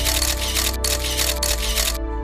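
Background music with a held chord, overlaid by a rapid run of camera-shutter clicks, about five a second, that stop abruptly at the end.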